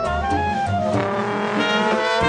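Traditional jazz band playing: trumpet, trombone and clarinet in ensemble over piano, tenor guitar, bass and drums, with a bass line pulsing underneath. Partway through, the held horn notes glide upward together.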